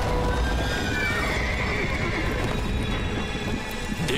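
Horses whinnying over a dense, rumbling clatter of hooves, with a horse's rising whinny about a second in, all over background music.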